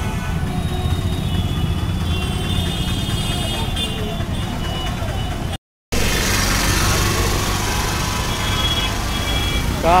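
Busy city street traffic: a steady rumble of engines and tyres with faint voices in the mix. It cuts out for a moment a little past halfway, then carries on.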